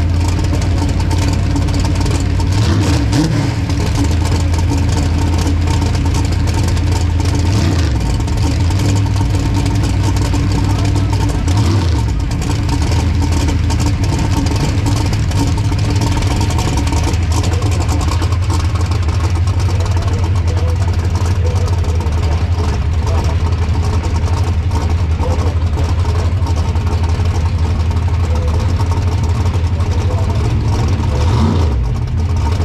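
Turbocharged drag-race Mustang's engine idling loudly and steadily close by at the starting line, with a few brief dips in its low running note in the first half.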